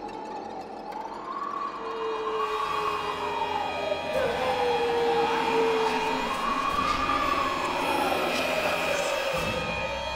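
A slow wailing tone that rises and falls twice, with a lower note held beneath it, swelling gradually louder.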